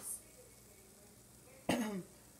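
A woman's short cough near the end, after a low, quiet pause.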